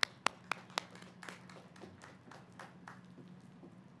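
Hand clapping close to the podium microphone: sharp claps about four a second that stop about a second in, followed by fainter scattered claps that die away by about three seconds.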